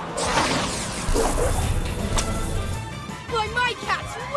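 Cartoon soundtrack with background music: a rushing whoosh at the start, then a low rumble, a sharp click about two seconds in, and short gliding tones near the end.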